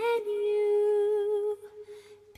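Music: a voice holding one long, steady note, which stops about a second and a half in.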